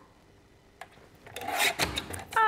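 A paper trimmer's blade drawn along its rail through a sheet of cardstock: a short rasping scrape in the second half, after a faint click.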